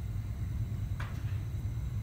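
Room tone: a steady low background hum, with one faint short sound about a second in.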